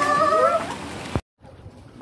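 A cat meowing: a long, wavering call that bends up and down in pitch and fades out under a second in, followed by a click and a sudden drop to silence.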